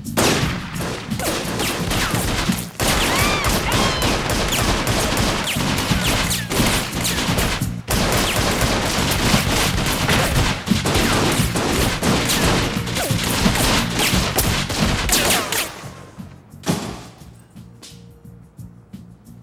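A sustained gunfight: rapid, overlapping handgun shots fired back and forth for about sixteen seconds, then dying away with one last shot near the end.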